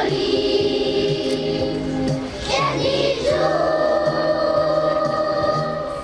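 Music: a choir singing two long held notes over a steadily pulsing accompaniment.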